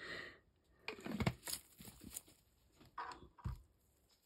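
Quiet handling sounds: a screw-top pot being picked up and moved in gloved hands, with scattered light clicks and rustles. A short breathy sound comes right at the start.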